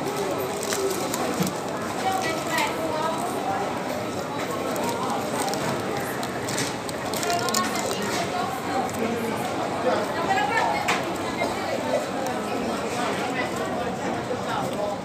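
Indistinct background chatter of people in a fast-food restaurant, with a paper food wrapper rustling and crinkling a few times.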